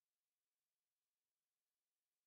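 Near silence: the sound track drops to dead, digital silence between sentences.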